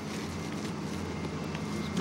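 A steady low mechanical drone, like an engine or motor running, under outdoor background noise.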